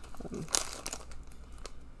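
Thin plastic packaging bag crinkling as it is handled, with a sharper crackle about half a second in.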